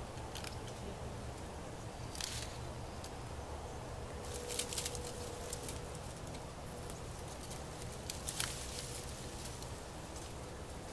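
Long-handled loppers snipping and snapping through berry vines and brush, with branches rustling: a few short, sharp cuts, a quick cluster near the middle and the loudest late on, over a steady low rumble.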